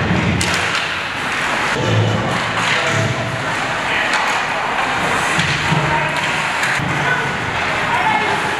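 Ice hockey play in a rink: skates scraping the ice, sharp clacks of sticks and puck, and dull thuds, with voices calling faintly in the hall.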